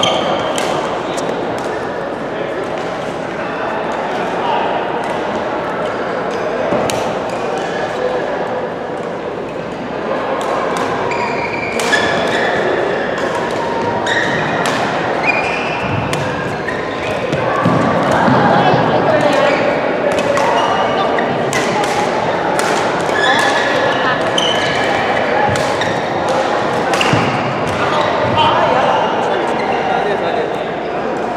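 Badminton rally: repeated sharp racket strikes on the shuttlecock, irregularly spaced, over a steady babble of many voices echoing in a large sports hall.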